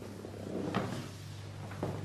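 A person getting up from a seat and moving about, with two faint knocks, one under a second in and one near the end, over a steady low room hum.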